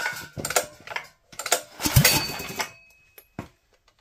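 Hands working the controls on a Predator 212 cc small engine that is not running: irregular clicks and knocks of metal parts, with a louder knock about two seconds in that rings briefly.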